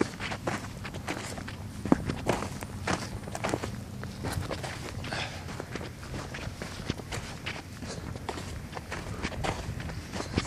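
Footsteps of a person walking, about two steps a second, over a faint steady low hum.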